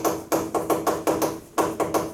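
Chalk writing on a chalkboard: a quick run of sharp taps and short scraping strokes, about five or six a second, with a brief pause partway through.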